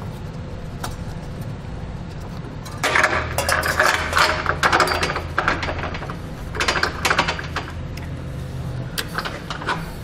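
Steel carriage bolt and spacer block rattling and clinking against the inside of a boxed vehicle frame rail as they are fed through it on a fish wire. The clinking comes in busy runs: one about three seconds in, a shorter one past the middle, a brief one near the end. A steady low hum lies underneath.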